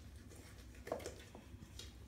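Wooden spoon stirring thick waffle batter in a stainless steel mixing bowl: faint stirring sounds, with a slightly louder one about a second in.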